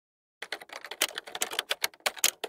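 Typing sound effect: a quick, irregular run of key clicks that starts about half a second in.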